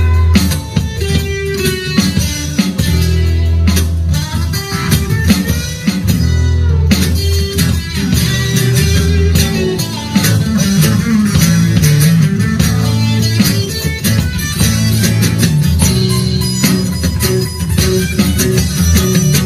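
Instrumental blues jam: an amplified acoustic guitar played with a second guitar and an electronic drum kit, with a steady beat and a strong bass line.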